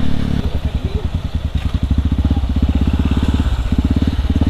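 Yamaha WR155R's single-cylinder four-stroke engine at low revs: its steady note turns to an even, low pulsing of firing strokes about half a second in.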